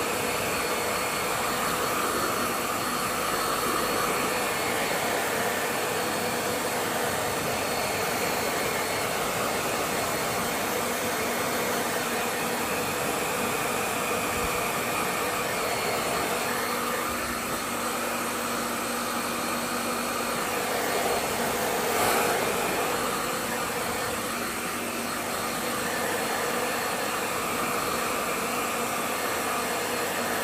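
Hair dryer running steadily: a constant blowing hiss with a faint motor whine.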